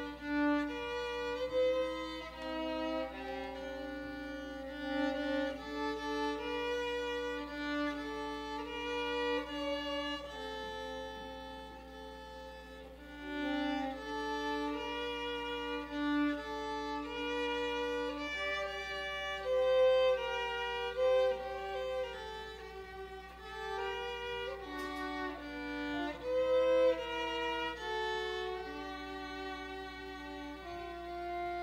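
Two violins playing a duet, two melodic lines moving together in held notes of a second or two each.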